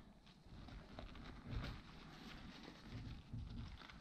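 Faint rustling of a nylon backpack being handled as fingers work an elastic cord onto its small anchor loops, with a few soft taps, the clearest about a second and a half in.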